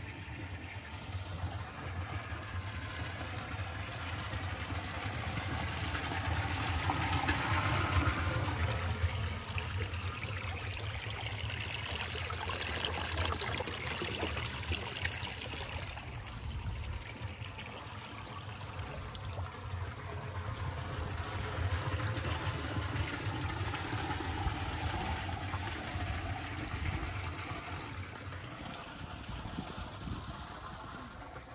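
Water running from a pipe spout into a wooden trough, a steady splashing trickle that swells louder, drops back and swells again.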